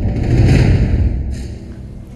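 A deep impact hit from a programme transition sound effect that swells about half a second in and then fades out, closing off the report's background music.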